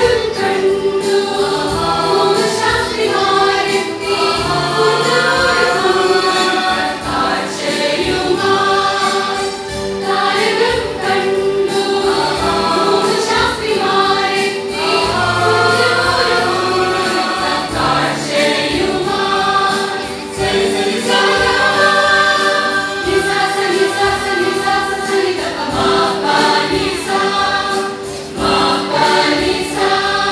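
A church choir singing a Christian song in parts over instrumental accompaniment with a steady beat.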